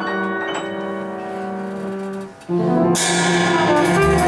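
Live jazz quartet of trumpet, piano, double bass and drums holding a sustained chord. About two and a half seconds in the sound drops out briefly, then a new chord comes in, with a cymbal splash about half a second later.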